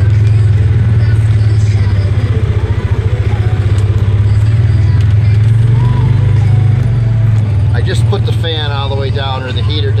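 Polaris side-by-side's engine running with a steady low drone as the machine pulls away in gear, heard from inside its enclosed cab. A man's voice starts talking over it near the end.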